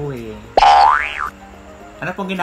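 A cartoon-style comedy sound effect: one loud whistle-like glide that starts suddenly about half a second in, climbs in pitch and falls back, and is over in under a second.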